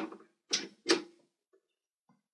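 Heavy battery discharge cable's connector being pushed into its panel socket on a load bank and twisted to lock: two sharp clicks, about half a second apart.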